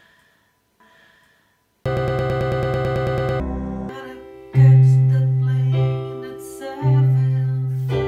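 Electronic keyboard being played. After a nearly silent start, a loud sustained chord with a fast pulsing texture comes in about two seconds in. Then come separate notes, with deep bass notes struck twice, around the middle and near the end, each fading away.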